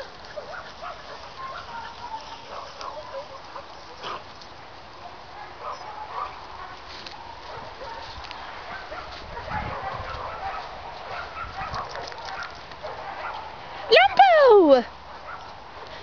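Dogs running and playing in a grass field, heard faintly with a few short yelps. Near the end there is one loud, drawn-out call that falls steeply in pitch.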